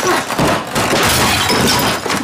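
Glass shattering and objects crashing over and over as framed pictures are smashed against a wall and swept off a cabinet top.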